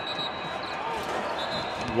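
Court sound of an NBA game in a near-empty arena: players' sneakers and the ball on the hardwood over a steady arena hum, with a thump near the end.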